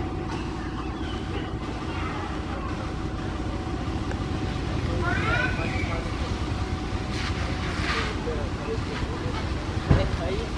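Steady low rumble of background noise under faint distant voices, with a short knock near the end.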